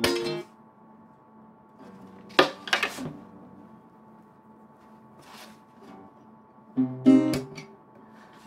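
Acoustic guitar strummed in a few separate chords with pauses between: one at the start, two close together about two and a half seconds in, and another near the end. The chords are being tried out by ear while working out a song's chords, the key not yet right.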